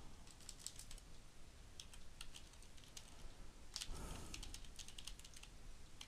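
Computer keyboard typing: faint key clicks in a few short runs.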